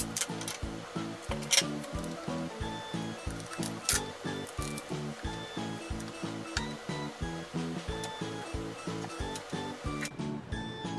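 Background music with a steady beat. A few brief sharp noises stand out over it, the loudest about one and a half and four seconds in.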